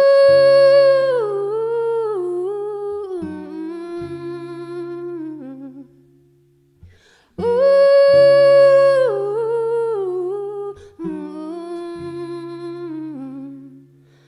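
A woman singing a wordless melody over held acoustic guitar chords. There are two long phrases, each starting high and stepping down in pitch, with a short pause between them.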